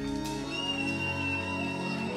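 Live band music at the quiet tail of a song: soft sustained chords, with a thin high held tone coming in about half a second in.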